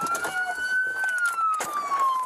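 Police car siren wailing, its pitch rising slowly and then falling, with a sharp crack at the very start and another about one and a half seconds in.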